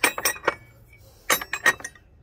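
Steel alligator wrenches clinking against one another as they are handled: a cluster of sharp clinks at the start, then another after a pause of about a second.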